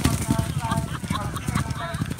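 Racehorses galloping past at close range on turf, a fast, irregular run of heavy hoofbeats.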